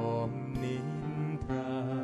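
Live acoustic band music from a slow song: acoustic guitar under a held, sustained melody line.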